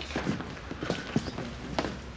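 Footsteps and shuffling of several people moving about, a string of irregular short knocks.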